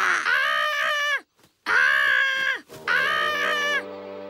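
Three drawn-out, high-pitched cries from an animated cartoon character, each about a second long, with a short silence after the first. A steady held musical chord comes in near the end.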